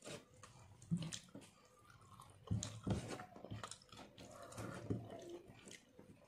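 A person eating rice and curry by hand: fingers mixing rice on a plate, with chewing and mouth sounds coming as irregular soft clicks and smacks.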